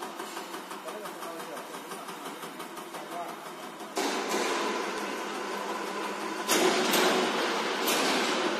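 EUS2000L EUI/EUP diesel injector test bench running an electronic unit injector test, with rapid, even ticking over the machine's hum. About four seconds in, a louder rushing noise suddenly joins with a steady tone, and it grows louder again with a few sharp knocks near the end.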